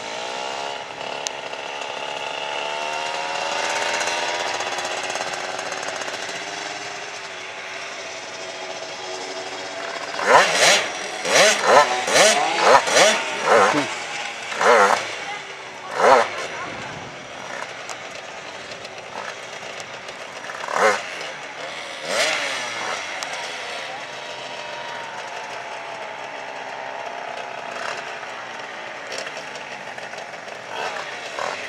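Speedway motorcycle engines on the track, one rising in pitch as it accelerates over the first few seconds. About ten seconds in comes a run of loud, short, close bursts, several a second, with a few more later.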